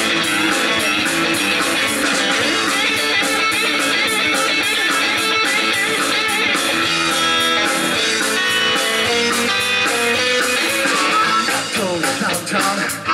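Live rock'n'roll band playing an instrumental break: an electric guitar lead over bass and a steady drum beat.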